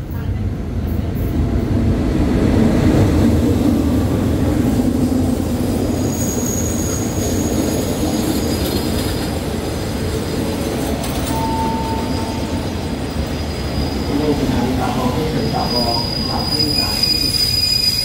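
State Railway of Thailand passenger train rolling along a station platform: a heavy rumble of wheels on rail that swells a couple of seconds in. Thin, high metallic squeals come from the wheels several times, the longest starting near the end.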